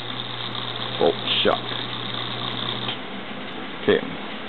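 Small single-phase capacitor-run induction motor running with a steady low hum, which cuts off about three seconds in.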